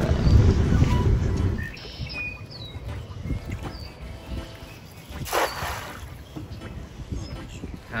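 A cast net thrown from a skiff lands on the water with a short splash about five seconds in, after a low rumble at the start. Birds chirp faintly in between.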